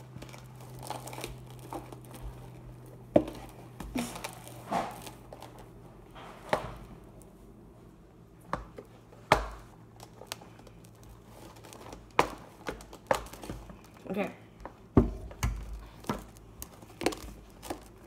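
Shaving-cream slime being stirred by hand in a plastic tub: irregular crinkling, squishing and clicks, with a few sharper knocks against the plastic.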